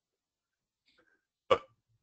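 Near silence, then a single short, clipped syllable of a voice near the end.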